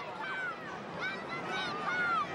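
Spectators in a stadium crowd calling out, several short high-pitched shouts that rise and fall, over a steady crowd murmur.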